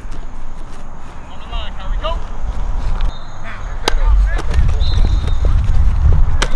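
Faint, distant shouting from football players and coaches across an open practice field over a steady low rumble, with a few sharp knocks, the clearest about four seconds in.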